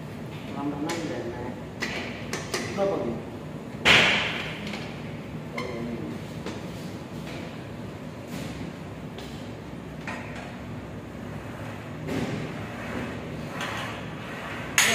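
Gym equipment knocking: a few light knocks, then one loud clank about four seconds in, as a lifter settles onto a Smith machine bench press.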